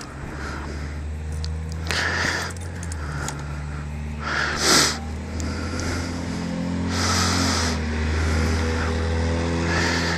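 Kawasaki KLR 650's single-cylinder engine idling steadily, with a few short hissing bursts over it, the loudest about five seconds in.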